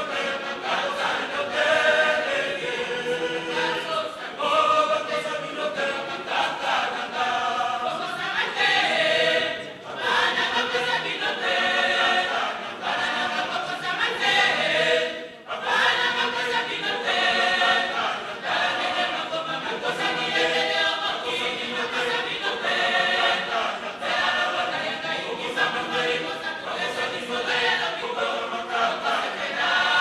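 Mixed choir of men's and women's voices singing a hymn unaccompanied, with brief breaks between phrases about ten and fifteen seconds in.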